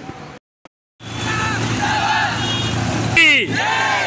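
After a brief dropout, street noise comes in: a steady traffic hum with people talking. Near the end a man shouts a slogan loudly, opening a patriotic call-and-response chant.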